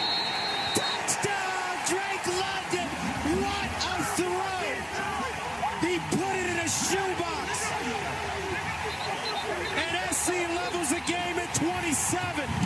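Several men's voices shouting and cheering over one another, with scattered sharp smacks, as football players celebrate a touchdown.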